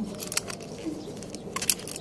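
Small sharp plastic clicks and metal ticks from a Toyota smart-key fob and its key ring being handled, a few near the start and a cluster about one and a half seconds in.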